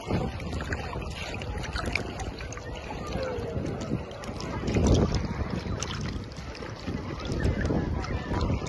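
Shallow seawater sloshing and splashing right at the microphone as it is carried through the water, with wind on the microphone; a louder surge about five seconds in.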